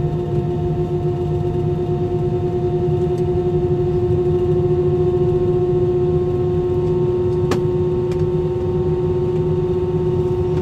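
Airliner's wing-mounted turbofan engines running at taxi power, heard inside the cabin: a steady hum with a held tone over a low rumble. A single sharp click about seven and a half seconds in.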